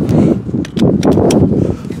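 Handling noise from a Tesla Supercharger connector and a stiff PVC-tube mock-up extension cable being moved: a run of light clicks and knocks over a low rustling rumble.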